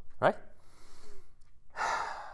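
A man breathing in quietly, then letting out a long sigh that starts near the end and trails off.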